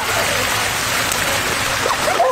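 Tiered fountain's water falling and splashing into its basin, a steady rushing sound.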